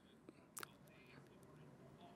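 Near silence: faint room tone in a pause between phrases of speech, with one brief faint click about half a second in.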